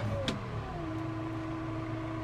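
John Deere 6135M tractor's diesel engine heard from inside the cab, its revs falling over the first second as the hand throttle is pulled back, then running steadily at the lower speed. A single light click sounds just after the start.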